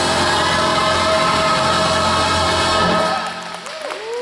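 Gospel choir with a backing band holding one loud sustained chord, cut off about three seconds in and dying away. The audience's first shouts come in at the very end.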